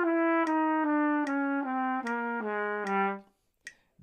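Solo trumpet playing a slurred descending bebop-scale line over F7: it starts on the 9th (written G), moves through the chromatic step to F, then goes down the dominant bebop scale to the low A below the staff. It plays about nine even notes, each roughly a step lower, against a steady click about every 0.8 seconds.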